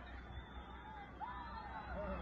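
Distant crowd of spectators calling out and whistling: several overlapping rising and falling cries, busier after about a second in, over a low steady rumble.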